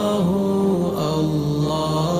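A man's voice chanting an Arabic devotional nasheed, holding long notes that step slowly up and down in pitch.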